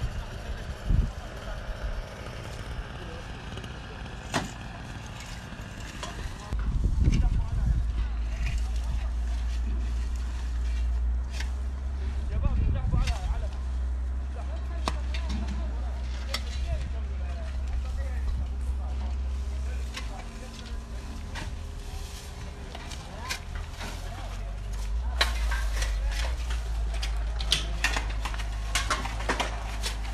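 Rakes and shovels scraping and clicking on dry, burnt ground, with a steady low rumble that comes in about six seconds in and drops out for a couple of seconds around twenty.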